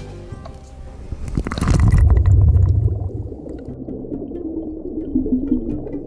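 Background music with a rising whoosh about a second and a half in, then a deep plunge into water; from then on the sound is muffled as if heard underwater, with low bubbling under the music.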